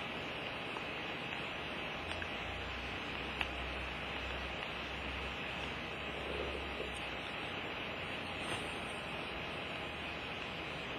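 Room tone: a steady hiss, with a faint low hum for a few seconds in the middle and a few faint ticks.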